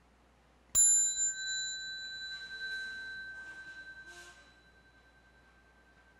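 Buddhist bowl bell (qing) struck once, a little under a second in, ringing on with a clear high tone that fades out over about four seconds. Faint rustling is heard under the ring.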